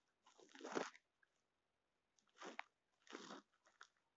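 Snow crunching in three short bouts, the first and loudest about a second in, the others close together near the end.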